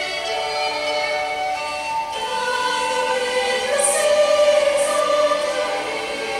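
Choir singing a hymn in slow, long-held chords that change every second or so, with two sung 's'-like consonants in the second half.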